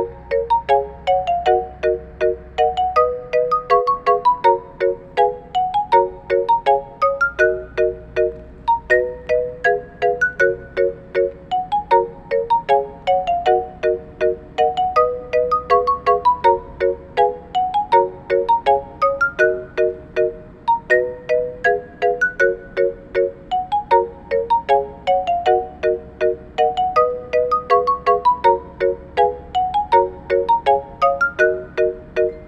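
Music: a quick, ringtone-like melody of short, bright, bell-like notes, with the same phrase and its falling run repeating over and over.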